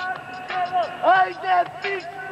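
Male voices shouting short calls, several of them falling off in pitch at the end, in the spoken intro of a hip-hop track.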